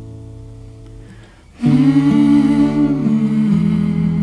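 A recorded acoustic ballad. Soft acoustic guitar plays at first, then a singing voice comes in about one and a half seconds in, much louder, over the guitar.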